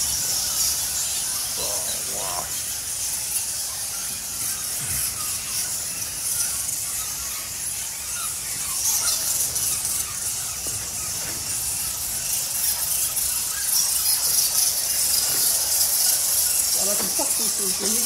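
A roosting bat colony squeaking overhead: a dense, shrill, unbroken chatter of many small calls, with low voices coming in near the end.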